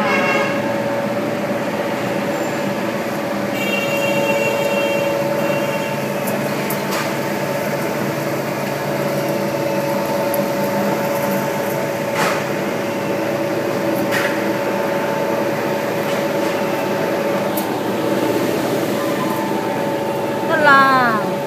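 Cotton opener machine running steadily: a constant motor hum over an even rush of noise as opened cotton fibre blows out of its outlet. Two sharp ticks come about two-thirds of the way through.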